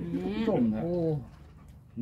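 A person's voice: a drawn-out spoken exclamation whose pitch rises and falls for about a second, then a brief lull.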